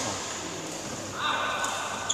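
Court shoes squeaking on the sports-hall floor as badminton players move: a high, held squeal starting about a second in, with faint chatter under it.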